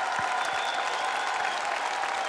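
Audience applauding, a steady even clatter of many hands.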